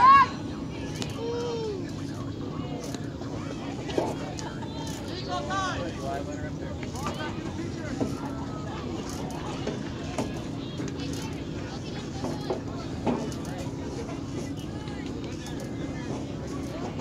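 Spectators and players at a baseball game calling out and chattering, with a loud shout right at the start and a few sharp knocks later, over a steady low hum.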